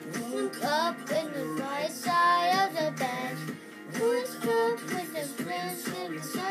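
A child singing a pop melody in held, gliding notes over backing music with guitar.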